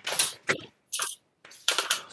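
A handful of short clinking and rustling noises, four or five in two seconds, with quiet gaps between them.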